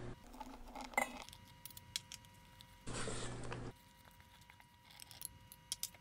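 Faint scattered clicks and taps of a utensil against a stainless steel mixing bowl as flour is stirred into cake batter by hand, with a brief soft rustle a little before the middle.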